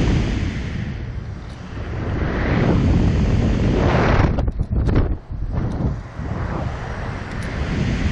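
Wind rushing over the microphone of a camera mounted on a Slingshot reverse-bungee ride capsule as it flies and tumbles through the air. The rush swells and fades, dropping away briefly about halfway through before building again.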